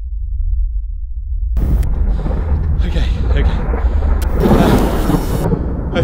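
Thunder rumbling: for about the first second and a half only a low, muffled rumble is heard, then the full storm sound cuts in, a dense noisy rush over the continuing low rumble.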